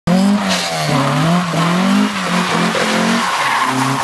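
Datsun 510's engine revving, its pitch rising and falling over and over under throttle, while the rear tyres squeal and scrub as the car slides sideways.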